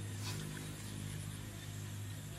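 A steady low hum, with faint sloshing as hands grope through shallow muddy water.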